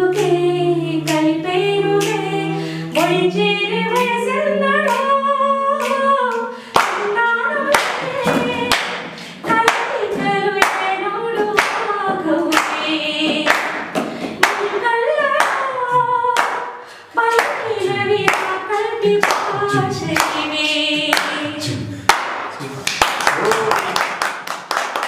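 A woman singing a song without instruments, with hands clapping along in time and other voices joining in. In the last moments the singing gives way to a burst of clapping.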